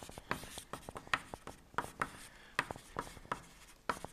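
Chalk writing on a blackboard: an irregular string of sharp taps and short scratchy strokes as the chalk forms letters.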